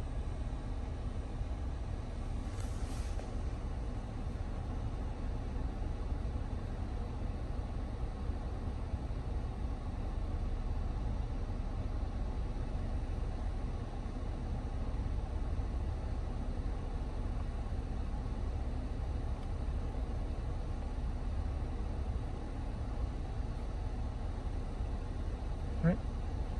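Jeep Wrangler JK's 3.6-litre Pentastar V6 idling steadily, heard from inside the cabin as an even low rumble.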